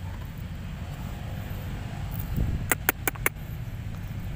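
Steady low rumble of distant traffic, with a quick run of four sharp clicks about three seconds in.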